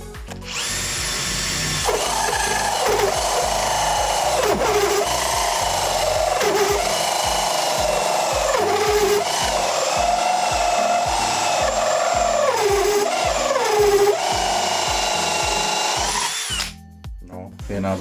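Villager Fuse VPL 8120 18 V brushless cordless drill driving an 89 mm hole saw through soft spruce. The motor whines steadily, its pitch dipping several times as the saw bites, and it pulls the cut through. It stops abruptly about a second before the end.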